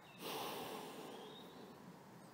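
A single audible breath from a person close to the microphone, a breathy rush that starts a moment in and fades over about a second.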